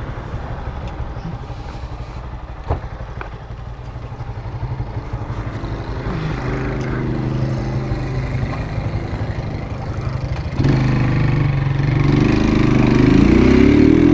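Motorcycle engine idling steadily, then the throttle opens about ten and a half seconds in and the engine gets suddenly louder as the bike pulls away and accelerates.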